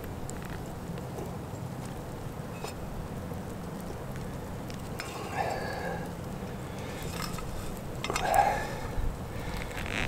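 A few faint clicks and scrapes of a spatula working scrambled eggs out of a stainless steel camp fry pan onto a plate, over a steady low hiss.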